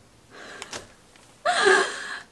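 A woman's loud, sharp gasp of shock about one and a half seconds in, after a fainter breath or rustle.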